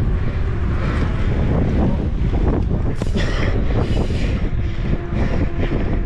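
Wind buffeting the microphone of a camera on a moving bicycle: a steady, heavy low rumble, with a few brief hissy rushes about halfway through.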